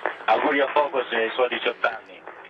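Speech heard over a narrow-band radio link, thin and telephone-like.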